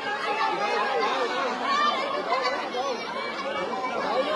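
A crowd of people talking over one another, many voices overlapping at once in a jostling crowd.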